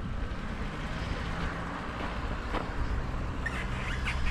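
Steady outdoor background noise, a low fluttering rumble under a hiss, with a few short high sounds near the end.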